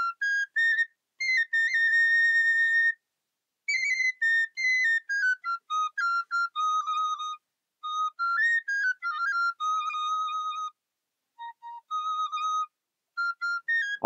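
Background music: a solo flute playing a melody in short phrases with brief gaps, the phrases mostly stepping down in pitch.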